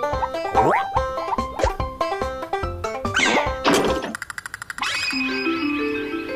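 Playful cartoon score of short plucked notes, broken about three seconds in by comic sound effects: two quick sweeping whooshes, then a rapid clicking clatter, giving way to a held chord.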